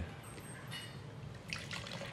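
Faint trickle and drips of red wine being poured from a bottle into a wine glass.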